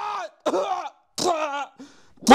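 A sung line trails off, then a man's voice gives two short coughing, groaning sounds with gaps of silence between them. It is voice-acting a drummer collapsing from a stroke during band practice.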